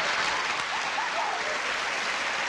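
Studio audience applauding steadily after a round has been completed, with faint voices and laughter underneath.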